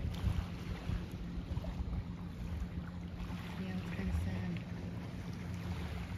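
Wind rumbling on the microphone, with a steady low hum underneath.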